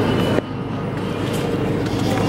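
Steady low hum and rumble of a shop interior's background noise, dipping slightly about half a second in.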